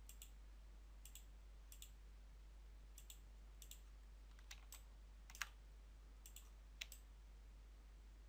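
Computer mouse clicks: about ten sharp clicks, several in close pairs, the loudest about five seconds in, over near-silent room tone with a steady low hum.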